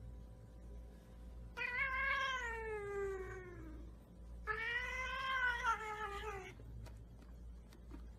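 A cat meowing twice, two long drawn-out meows, the first sliding down in pitch at its end.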